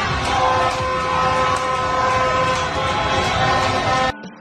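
Street crowd on motorbikes celebrating: horns blare in long, steady held tones over a dense din of engines and crowd noise.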